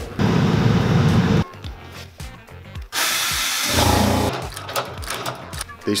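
Short bursts of cobbler's shop machinery. A fast, even machine run lasts the first second or so, then a loud hissing burst comes about three seconds in.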